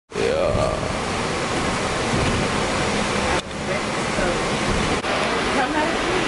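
Loud, steady noise inside a shuttle bus cabin, its engine and ventilation drowning out voices, with a short break about three and a half seconds in.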